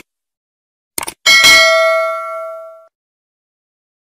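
Subscribe-animation sound effects: a short click about a second in, then a bright notification-bell ding that rings out and fades over about a second and a half.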